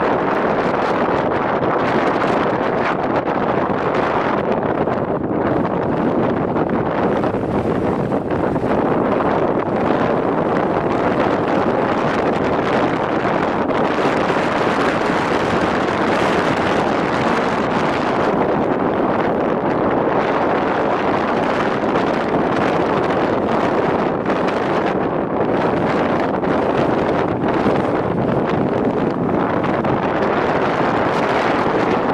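Strong mountain wind blowing across the camera microphone: a loud, steady rushing noise that flutters slightly with the gusts.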